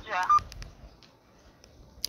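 A voice heard through a mobile phone's loudspeaker, thin and without low end, stops about half a second in. A near-quiet pause with a few faint clicks follows.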